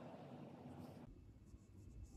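Faint scratching of paintbrush bristles working oil paint on a palette, stopping abruptly about a second in, then near silence.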